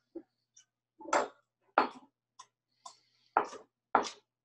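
Chef's knife chopping kale on a wooden cutting board: a few sharp chops at uneven intervals, starting about a second in.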